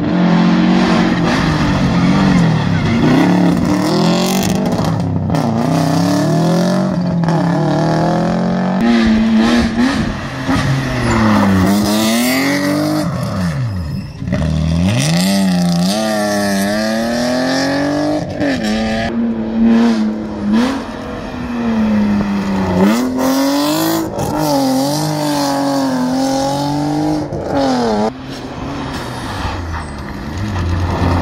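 Rally car engines revved hard through a hairpin. The engine note keeps climbing and dropping as the drivers brake, change down and accelerate away, with a deep dip and swoop about halfway through as a car takes the bend. Another car is coming up on full throttle near the end.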